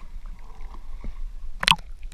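Small waves lapping and sloshing around a camera held at the sea's surface, with a sharper splash near the end.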